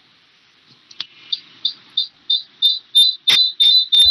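A high-pitched electronic beep repeating about three times a second, getting louder and closer together until it merges into one steady piercing tone near the end.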